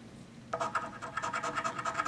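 A coin scratching the coating off a scratch-off lottery ticket in rapid, repeated strokes, starting about half a second in.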